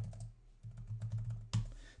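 Computer keyboard typing a command: a quick run of key clicks with a short pause about half a second in, ending in a louder stroke about one and a half seconds in, over a low steady hum.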